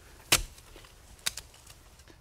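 Clamshell post-hole digger jabbed into the soil to dig a post hole: one sharp strike about a third of a second in, and a lighter one about a second later.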